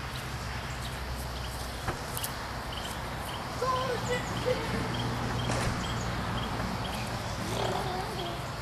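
Outdoor ambience: a steady low hum, with a run of short, evenly spaced high chirps, about two to three a second, through the middle, and a few faint pitched calls.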